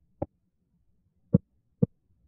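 Three short, isolated mridangam strokes, each with a brief pitched ring: one just after the start, then two more about half a second apart near the end.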